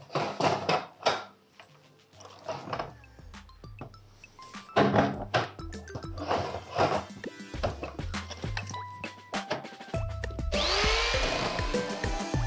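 Background music with clunks and scrapes as a spiral steel duct is handled and marked on a roller stand. Near the end an electric power shear starts up with a rising whine and runs against the duct's sheet metal, beginning the cut.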